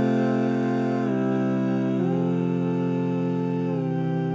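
A cappella voices in close harmony hold long wordless chords, and the chord changes about a second in, two seconds in, and again near the end.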